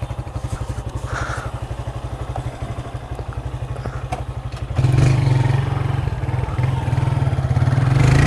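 Small commuter motorcycle's engine idling with an even, steady pulse; it gets louder about five seconds in as the rider climbs on and takes the throttle grip.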